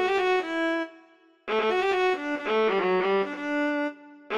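A solo violin playing two phrases of quick notes, the first dying away about a second in, the second starting after a short pause and fading near the end.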